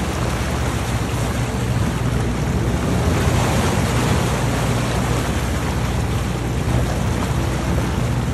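Water rushing and splashing along the hull of a moving boat, a steady wash of spray, over the even low hum of the boat's engine.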